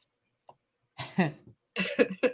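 Silent for about a second, then a woman coughs in short, sharp bursts mixed with laughter.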